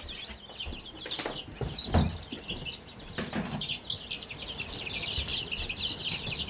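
A brooder full of baby chicks peeping constantly, many rapid overlapping high chirps. A few dull knocks sound over it, the loudest a thump about two seconds in.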